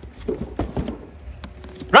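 An elastic tie-down cord being stretched over a cardboard box and hooked onto the frame of a folding hand truck, with a few light, irregular knocks and rubbing from the cord, box and frame.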